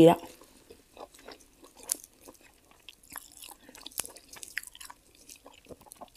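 Quiet eating sounds: chewing with scattered soft clicks, and fresh leafy greens rustling as they are picked and folded by hand.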